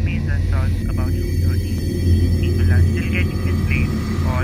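Steady low engine drone heard from inside a car's cabin, with an indistinct voice over it.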